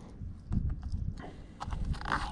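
Fillet knife working the meat off a redfish's rib cage on a plastic table: a few soft, low knocks with faint clicks as the blade and fish shift against the tabletop.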